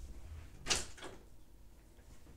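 A door being opened a crack: a sharp latch click about two-thirds of a second in, then a lighter click just after.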